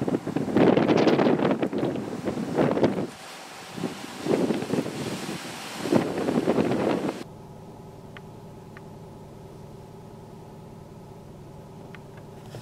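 Plastic snow shovel scraping and pushing heavy wet snow across a concrete driveway, in three bouts of strokes. About seven seconds in it cuts off suddenly to a steady mechanical hum, with two faint clicks.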